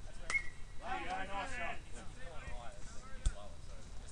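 Voices calling out, with a click near the start and a single sharp knock about three seconds in.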